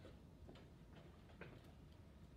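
Near silence: room tone with a few faint, irregularly spaced clicks, the clearest about one and a half seconds in.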